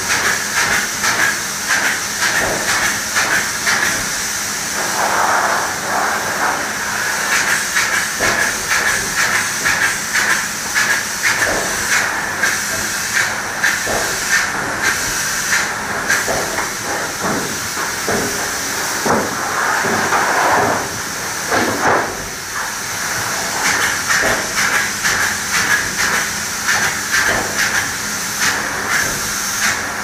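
High-pressure two-component spray gun hissing as it sprays truck bed liner material, the spray pulsing quickly, about twice a second, with brief changes around five seconds in and just past twenty seconds.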